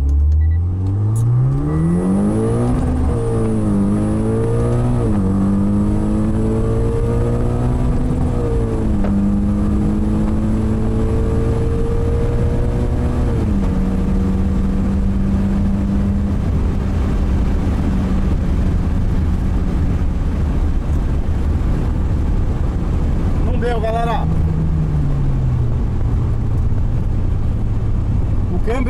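Mitsubishi Lancer Evolution's turbocharged four-cylinder engine heard from inside the cabin, pulling up through the gears with a rising pitch that drops at each upshift, then holding a steady note and winding down near the end. Its transmission has gone into emergency mode.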